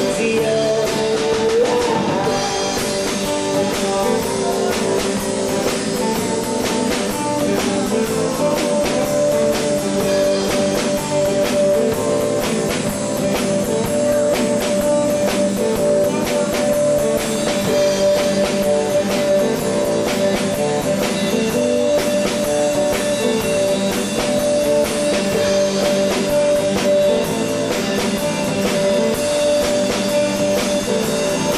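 Live band playing a song on acoustic guitars over a drum kit, with a steady beat. A higher repeating note comes in about eight seconds in.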